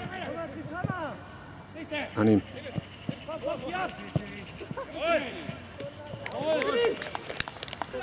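Footballers' shouts and calls across an outdoor pitch during play, several voices overlapping, the loudest shout about two seconds in. A few short knocks are heard among them.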